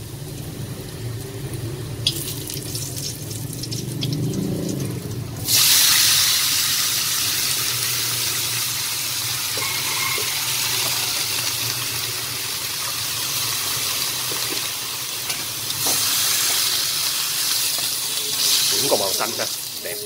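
Chopped Chinese mustard greens tipped into a hot wok of frying garlic, setting off a sudden loud sizzle about five seconds in that carries on steadily as they are stir-fried with chopsticks.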